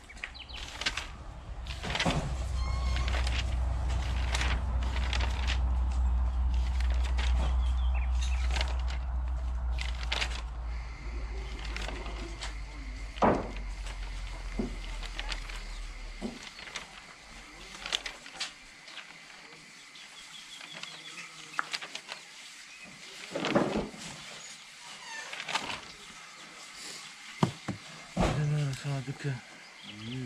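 Outdoor ambience: a low rumble through the first half that fades out about sixteen seconds in, with scattered clicks and taps throughout.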